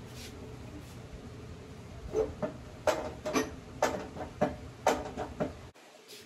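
Metal wheeled stand carrying a sliding miter saw rattling and clanking as it is rolled and set in place: about ten sharp knocks over some three seconds, starting about two seconds in.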